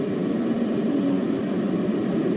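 Steady background hiss and low hum in the broadcast audio, constant through a pause in the speech, with no distinct event.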